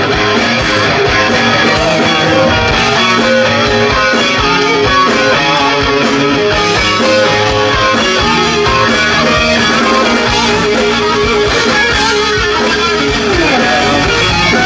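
Live rock band playing loud, with an electric guitar carrying the lead in held, bending notes and a long downward slide near the end.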